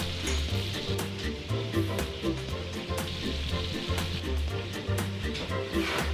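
Butter and minced garlic sizzling and bubbling in a frying pan, a steady hiss. Background music with a regular bass beat plays underneath.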